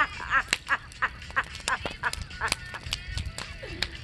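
Bonfire of burning wood and trash crackling, with many irregular sharp pops and snaps, over a few short bursts of laughter.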